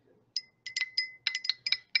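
Stirring rod clinking rapidly against the inside of a glass beaker as oil and water are stirred together, about a dozen bright clinks with a short ring, starting about a third of a second in.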